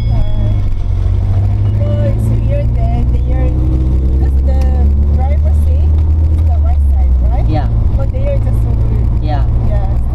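A van's engine and road rumble heard from inside the cabin as it drives off. The engine note rises for a couple of seconds about three seconds in and shifts again near seven seconds, with soft voices over it.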